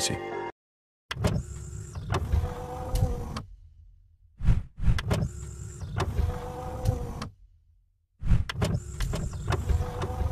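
Mechanical whirring-and-sliding sound effect, like a motorised panel moving. It plays three times in a row with short gaps between, and each time it starts with a few sharp clunks.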